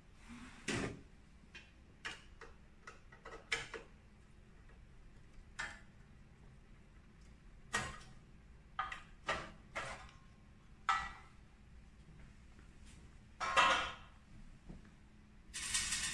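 Scattered short clicks and knocks of a screwdriver and a printer carriage cover being handled as the cover is unscrewed and lifted off. There is a louder knock near the end, then a short scraping rustle as the cover comes away.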